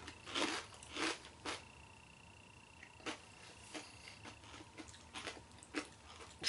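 Faint chewing with a handful of separate crunches, irregularly spaced: people biting into crunchy savory rice-cracker balls with fried peanuts.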